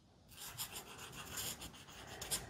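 Fine point of a Prismacolor Premier marker drawing on sketchbook paper: faint, scratchy strokes starting about a third of a second in.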